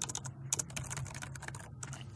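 Typing on a computer keyboard: a quick run of keystrokes, about five or six a second, as a command's file name is typed and entered.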